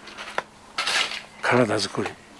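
Loaded wheelbarrow being pushed: a sharp metal clink, then a short scraping rattle. A man speaks Japanese briefly near the end.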